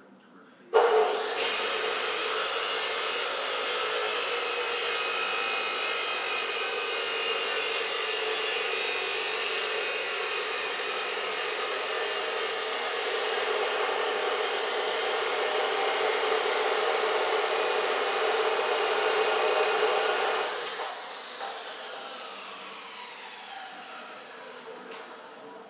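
DeWalt abrasive chop saw starting up about a second in and cutting through metal, a loud steady grinding for about twenty seconds. It is then switched off and the blade coasts down with a falling whine.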